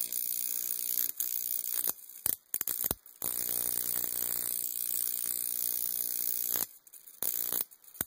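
High-voltage arc at the output wire of a Cockcroft-Walton voltage multiplier driven by a neon sign transformer, buzzing steadily with a hiss. The arc cuts out suddenly about two seconds in and restarts a second later, then drops out again near the end, with a few short crackles before it stops.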